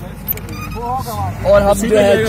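A man talking over the low, steady running of a jeep's engine.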